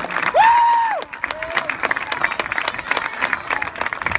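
Crowd applauding and cheering. One person gives a loud held whoop about half a second in, then steady clapping carries on.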